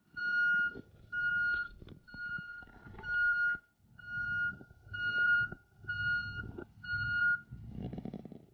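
Flatbed tow truck's reversing alarm beeping steadily, about one beep a second, with the truck's engine running underneath.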